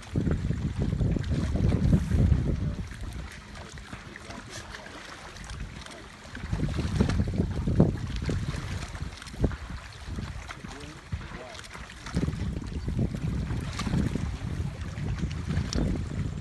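Wind blowing across the microphone in three gusts, each a low rumble, with quieter spells between.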